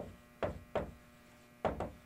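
Dry-erase marker writing on a whiteboard: about five short taps and scratches as letters are stroked on, over a steady mains hum.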